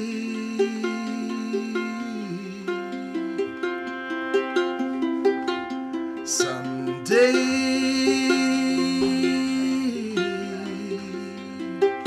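Ukulele picking a repeating pattern of notes over bowed cello, with a man singing two long held notes, the second beginning about seven seconds in.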